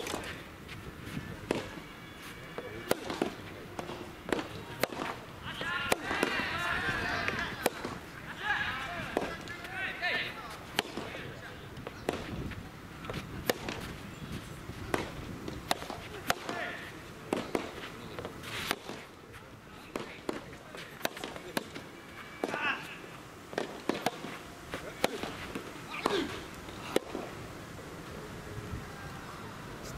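Soft tennis rally: a hollow rubber ball struck by rackets and bouncing on the court, heard as a long series of sharp, separate pops. Voices shout briefly twice in the first half and again near the end.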